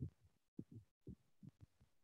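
Near silence with a few faint, short low thuds.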